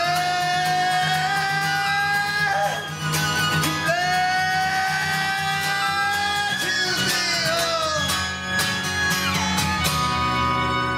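Acoustic band playing an instrumental passage: upright bass, strummed acoustic guitar and fiddle, with two long held melody notes that rise slightly in pitch.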